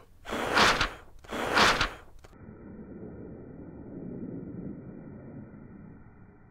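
A person blowing hard across the top of a sheet of paper twice, each breath a loud rush of air lasting about a second. It is followed by a quieter, low, muffled rushing sound as the blow is replayed in slow motion.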